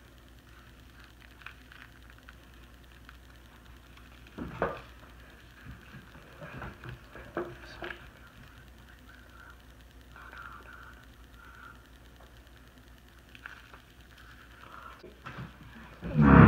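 Quiet handling noise as a plastic fidget spinner is worked out of a Play-Doh mold: faint rustles and small taps, with a sharper knock about four and a half seconds in and a few more clicks a couple of seconds later.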